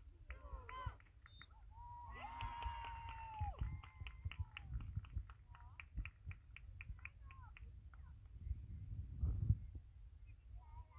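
Distant children's voices calling and shouting across an open pitch: a quick burst of shouts, then one long held high shout, then a string of short high calls.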